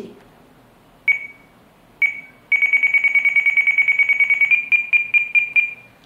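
RadioLink RC8X transmitter beeping at each touch-screen key press as channel 1's end point is stepped down from 100 to 50. It gives two single beeps, then a fast run of beeps for about two seconds, then a few slightly higher beeps at about four a second near the end.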